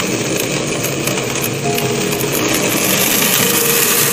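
Acrylic centrifugal pump cavitating with its suction valve throttled: a steady, loud crackling rattle that sounds like rocks going through the pipe. It is the noise of vapour bubbles, flashed off by the low suction pressure, collapsing back into liquid.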